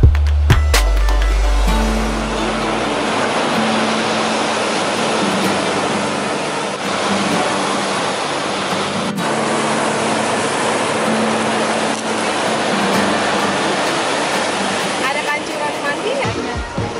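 Ocean surf breaking and washing up the sand: a steady rushing noise. A faint low held note of background music runs under it, and a loud low rumble fills the first two seconds.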